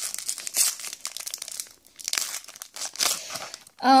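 Foil wrapper of a Pokémon trading-card booster pack crinkling as it is handled and torn open by hand. The crackle comes in two stretches with a short pause about two seconds in.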